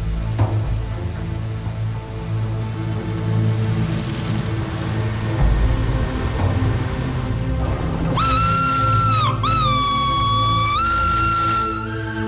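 Film score playing throughout. About eight seconds in, a steam locomotive's whistle blows one long, shrill blast, broken once briefly, with its pitch rising slightly near the end.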